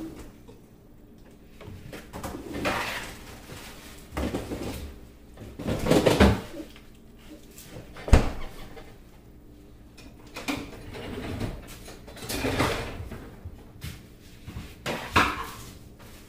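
A wooden spoon stirring broth in a stainless-steel stockpot, working butter into the liquid. It swishes and scrapes against the pot in irregular strokes every second or two, with one sharp knock about eight seconds in.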